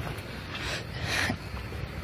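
Soft rustling and handling noise from a person climbing onto a parked tractor, with a brief breathy swell about a second in.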